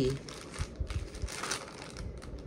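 A plastic mailer bag crinkling as it is handled and opened by hand, in irregular crackly bursts.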